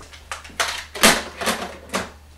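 A landline telephone handset being knocked and clattered onto its base: a run of about six sharp plastic clacks spread over two seconds, over a steady low hum.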